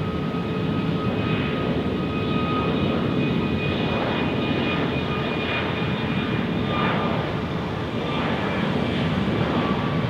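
Turbofan engines of a Virgin Australia Boeing 737 rolling along the runway: a steady jet-engine rush with high, steady fan whines over it.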